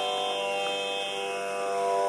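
A steady instrumental drone of held notes, with no melody and no singing, in Carnatic-style devotional accompaniment.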